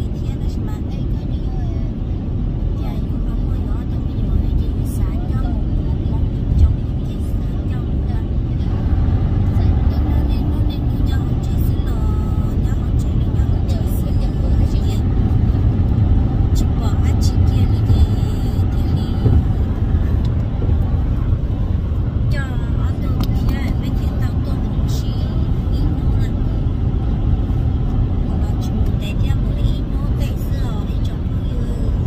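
Steady low rumble of road and engine noise inside a moving car's cabin, with quiet talking over it.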